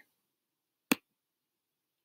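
A single sharp computer mouse click about a second in, with near silence around it.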